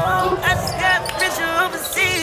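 Sneakers squeaking on a hardwood gym floor during a volleyball rally, short squeaks several times, with a few sharp knocks of the ball being played.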